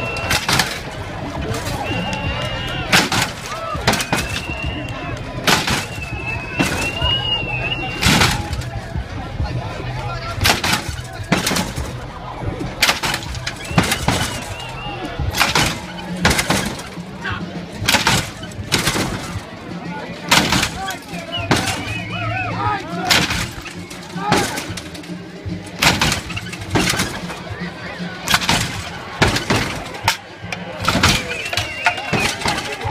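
Red lowrider's hydraulic suspension hopping the car's front end over and over, each landing a loud bang on the pavement, about one a second.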